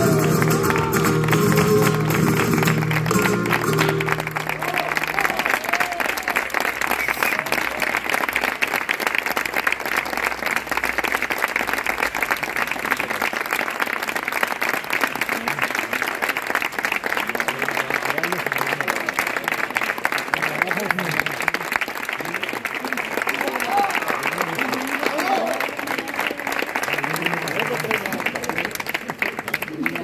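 A flamenco seguiriya ends on a held final chord and voice in the first four seconds or so, then an audience applauds steadily, with a few voices calling out over the clapping.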